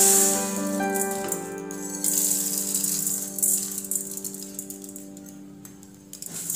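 Dry split moong dal poured into a steel kadai, the grains rattling against the metal, with a fresh rush of rattling about two seconds in before it tails off. Background music with held keyboard-like notes plays over it.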